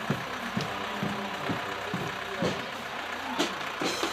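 Deutz-Fahr tractor's diesel engine running as it passes close by, with the steady beat of parade music thumping about twice a second.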